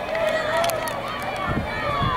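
Spectators yelling and cheering on runners in a track race, with several long, high-pitched shouts overlapping. A low rumble comes in near the end.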